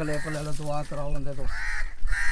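A crow cawing, one call just after the start and another near the end.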